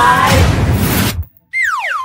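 Loud music with a group shouting excitedly, cut off abruptly a little past the first second. After a brief silence comes a comic sound effect: a whistle-like tone sliding steeply down in pitch.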